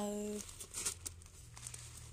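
Clear plastic bag full of plastic pearl beads crinkling in a few short bursts as a hand squeezes it.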